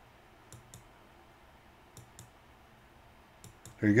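Computer mouse clicking: three pairs of faint, short clicks, each pair about a second and a half after the last, while paging through photos in a web browser.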